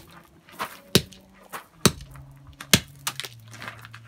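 Claw hammer striking a broken Fitbit on gravel: three hard blows about a second apart, with lighter knocks between them.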